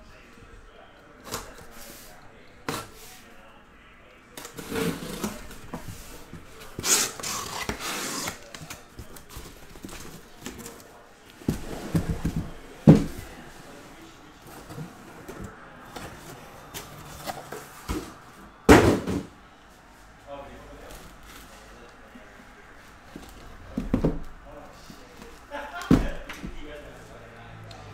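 Cardboard case and shrink-wrapped card boxes being handled on a table: sliding, scraping and rustling, with several knocks, the sharpest about two-thirds of the way in.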